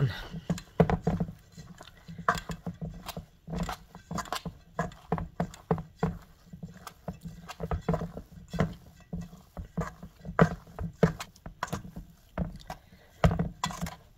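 Hands kneading and pressing a stiff, crumbly dough of fava bean protein flour and coconut paste in a stainless steel bowl: irregular squishes and knocks, about one or two a second, as the bowl shifts under the pressing.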